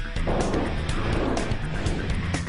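Background music with a car sound effect laid over it: a burst of engine-like noise about a quarter second in that dies away after a little over a second.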